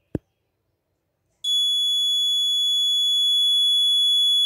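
A single sharp click, then about a second and a half in a piezo alarm buzzer on an Arduino project board starts a steady high-pitched tone and holds it.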